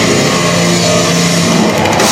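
Heavy rock band playing loud and live: heavily distorted electric guitar holds a low droning note over the drum kit.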